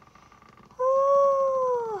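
A young woman's voice holding one long, high 'aah' while she stretches, starting a little under a second in and sliding down in pitch as it ends.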